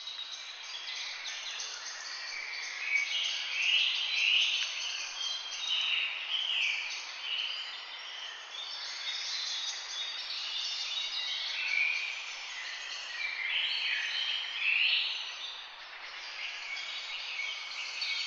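Many small birds chirping and calling over one another, a dense, continuous chorus of short high chirps that swells and fades a little.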